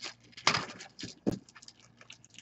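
Hard plastic graded-card slabs clicking and clacking against each other as they are handled and stacked, a few short sharp knocks with quiet gaps between them.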